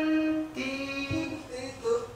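A lone unaccompanied singing voice played back from a pitch-correction editor, holding sung notes one after another, the last one short. The notes have been snapped by automatic pitch correction toward the nearest note, so any note sung far off lands on a wrong one.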